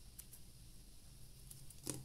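Small scissors faintly snipping a thin strip of soft cold porcelain clay: a few quiet snips, with a slightly louder click near the end.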